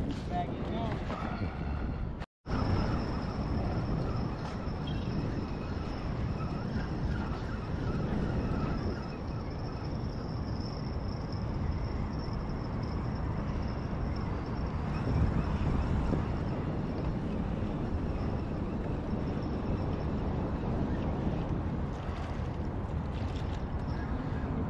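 Wind buffeting the microphone over a steady low outdoor rumble, with a faint high steady whine over most of it. The sound cuts out completely for a moment about two seconds in.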